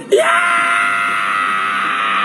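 A man's loud, long scream or wail: it rises quickly at the start, then is held at one steady pitch.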